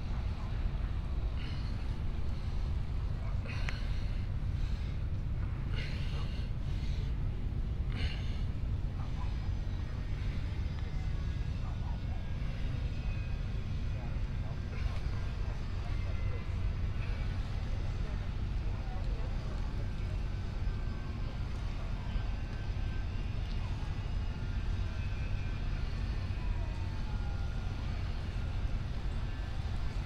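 A steady low outdoor rumble, with a man's short, sharp breaths of exertion several times in the first eight seconds or so.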